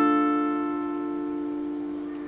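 Acoustic guitar ringing out a D minor chord barred at the fifth fret. Its notes are picked one after another, the last right at the start, then the chord sustains and slowly fades.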